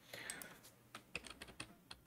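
Faint, scattered clicks of computer keys, several of them in the second half, as moves are stepped through on a digital chess board.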